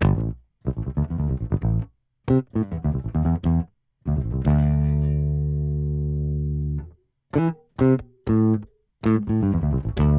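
Sampled electric bass from Native Instruments' Prime Bass library, played on the muted articulation: quick groups of short muted notes, then one note held for nearly three seconds that stops abruptly, then more short notes. The notes end with the library's release noise, heard as each key is let go.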